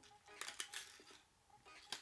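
Faint clicks and rustling of plastic lure packaging as a small hard-bodied lure is carefully worked out of its blister pack, with a sharper click near the end.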